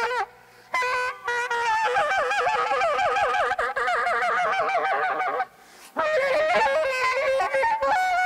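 Saxophone blown in a free, honking squawk: held notes break into a fast warbling wobble in the middle. It stops for two short breaths, just after the start and about five and a half seconds in.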